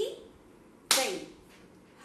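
A single sharp hand clap about a second in, keeping the taala beat of a Bharatanatyam rhythm recitation, with the spoken syllable "tai" landing on the clap.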